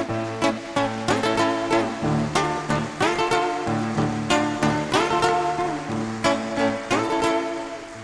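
Acoustic guitars playing an instrumental passage between sung verses of a folk song, plucked and strummed chords over low bass notes, getting quieter near the end.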